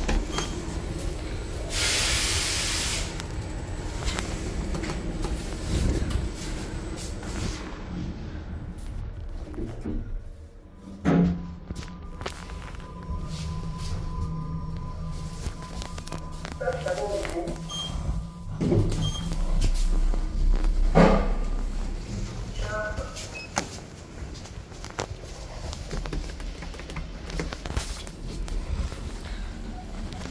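Inside a KONE traction elevator car: sharp clunks of the car doors and mechanism, a steady low hum while the car runs, and a few short electronic tones and snippets of voice.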